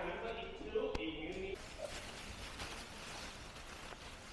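A voice speaking for about a second and a half, then low, steady room noise in a large hall.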